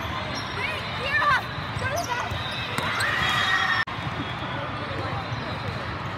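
Busy indoor volleyball hall din: voices calling out across the courts, mixed with the thuds of volleyballs being bounced and struck, with the echo of a large hall. A held tone sounds about halfway through and cuts off sharply.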